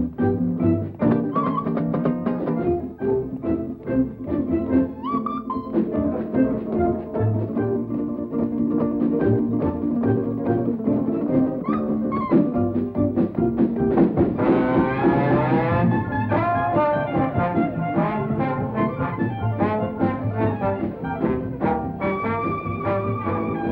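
A small jazz band playing an instrumental passage: ukulele, double bass, electric guitar and trombone, with a bare oboe reed blown into the microphone as a lead voice whose notes bend and squawk. A bright, hissy swell rises over the band for about a second and a half a little past the middle.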